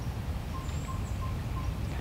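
Faint outdoor background noise with a faint run of about five short, evenly spaced high peeps.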